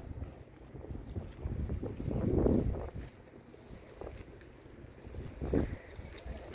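Wind buffeting the phone's microphone in gusts, with a low rumble that swells loudest about two seconds in and again briefly near the end.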